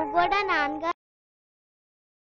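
A high-pitched voice with strongly sliding pitch over steady held music tones, cutting off abruptly about a second in, followed by dead silence.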